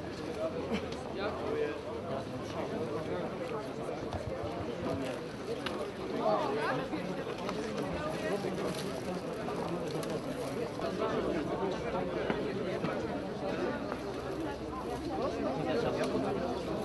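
Crowd of people talking over one another, a steady babble of many indistinct voices.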